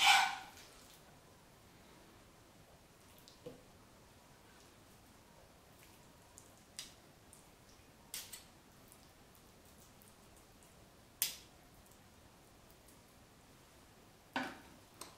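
Metal spoons clicking and scraping against each other and on brick pastry as vegetarian mince is spooned out: a handful of light, sparse clicks over quiet room tone, the sharpest right at the start.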